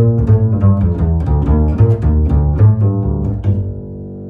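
1985 Herbert Dittrich double bass played pizzicato: a quick run of plucked low notes with a growly tone. The notes stop about three and a half seconds in and the last one rings away.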